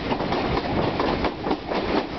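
Passenger coaches of a long train rolling past, their wheels clacking over the rail joints in a rapid, uneven run of clicks over a steady rumble.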